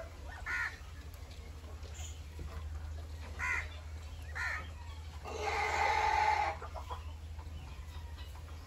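Parrot-beak Aseel chickens clucking: a few short calls, then one longer drawn-out call of about a second just past the middle, over a steady low hum.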